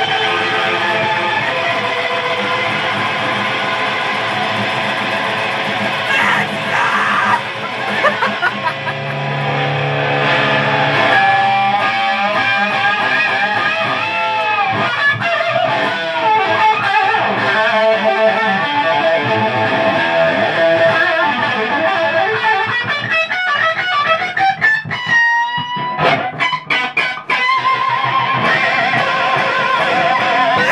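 Gibson Les Paul electric guitar played loud through a Marshall amplifier: sustained notes and a lead line with string bends, broken by a few short choppy stops near the end.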